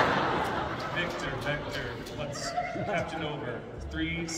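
A man speaking over a microphone, with some laughter and a noisy haze near the start.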